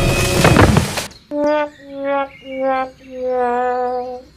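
Background music cuts off about a second in. A descending four-note 'sad trombone' comedy sound effect follows, the last note held longer with a wobble, marking the doll's comic fall.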